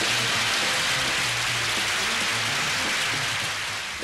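Studio audience applauding steadily, with the last low notes of a theme tune beneath.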